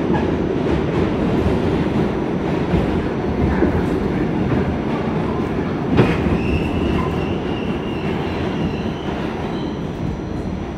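R46 subway car running on the rails, heard from inside the car: a steady rumble with a sharp knock about six seconds in, then a thin, steady high wheel squeal for about three seconds as the train slows into a station.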